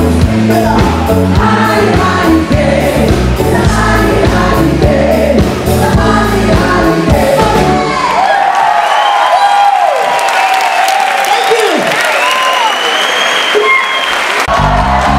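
Live disco-pop band with female lead and backing vocals over a steady bass and beat. About eight seconds in, the bass and drums drop out, leaving high sliding sounds that fall in pitch several times, before the full band comes back in at the very end.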